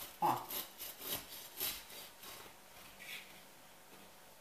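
Knife sawing through the crunchy crust of a buckwheat and zucchini loaf: a few rasping strokes about half a second apart, dying away after about three seconds.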